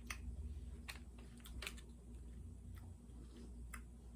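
Faint closed-mouth chewing of a soft peanut-butter snack cake: a few soft, irregular mouth clicks over a low steady hum.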